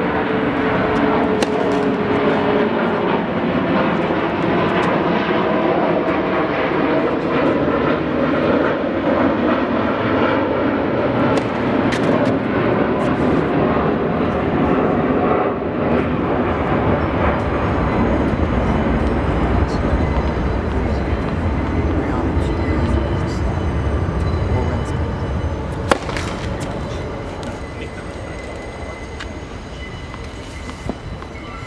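A fixed-wing aircraft passing overhead: a steady, loud rumble that swells and then fades away over the last few seconds. Scattered sharp knocks of tennis balls being struck and bounced sit on top of it, one louder near the end.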